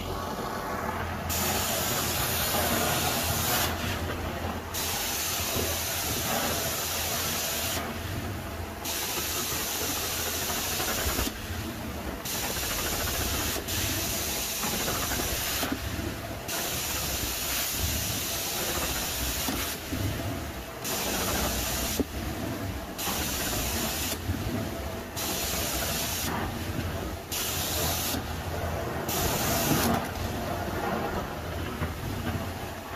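Carpet extraction wand working carpet: a steady vacuum drone runs underneath, and over it the hiss of the spray jets, which cuts off briefly about nine times, every two to four seconds, as the trigger is released between strokes.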